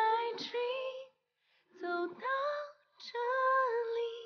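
A woman singing a slow Mandarin pop ballad, long held notes in three phrases with short silent pauses between them.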